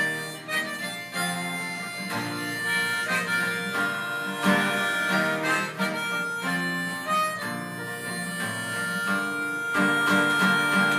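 Harmonica worn in a neck holder, played in long held notes over acoustic guitar by the same player.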